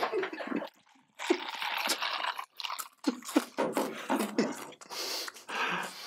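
Bourbon poured into a plastic cup of ice, mixed with short breathy laughs.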